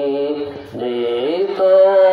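A man singing a devotional song into a microphone in long, held notes, with a short break for breath a little under a second in and a rising slide into the next note.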